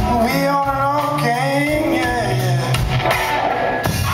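Live blues-rock band playing a slow blues through a hall PA: electric guitars, bass and drums, with a lead line that bends and slides in pitch.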